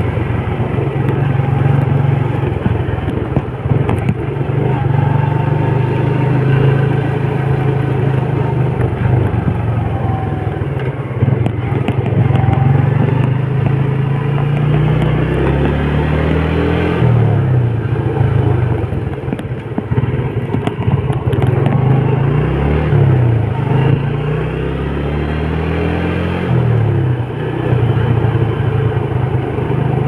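Small underbone motorcycle engine running while being ridden, heard from the rider's seat over road noise. The engine note drops and climbs again about halfway through, and again a few seconds later, as the rider eases off and speeds up.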